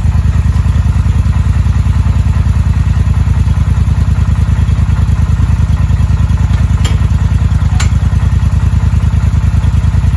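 ATV engine idling steadily with a fast, even pulse. Two sharp clicks sound about seven and eight seconds in.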